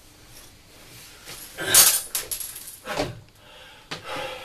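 Scuffling and rustling as a person clambers down from hanging upside down off a wooden door, clothes and body scraping against it. The loudest scrape comes just under two seconds in and another about three seconds in.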